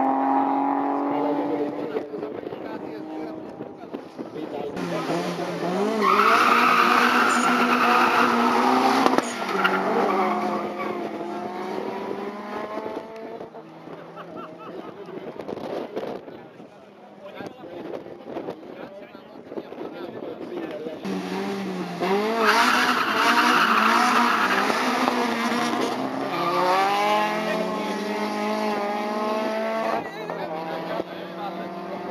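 Drag-race cars at full throttle, twice: each time a sudden loud burst as they leave the line, then engine notes that climb in pitch, drop at each gear change and climb again as they pull away down the strip. The loudest stretches are about 6 to 9 seconds in and again about 22 to 25 seconds in.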